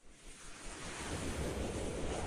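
A rushing whoosh sound effect that swells in over about the first second and holds steady, with a rising sweep beginning near the end.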